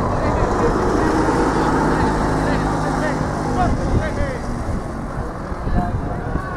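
Wind buffeting the camera microphone on an open sports field, with distant voices of players and spectators. A steady low mechanical hum runs under it for the first few seconds.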